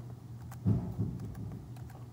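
Scattered light clicks of a computer mouse and keyboard, with a couple of soft low thumps a little before the middle, over a low steady hum.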